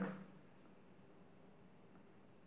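Faint, steady high-pitched trill of a cricket, unchanging throughout.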